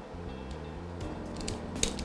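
A knock-off self-adjusting wire stripper squeezed on a thin wire, giving a few clicks and a sharp snap near the end, over faint background music.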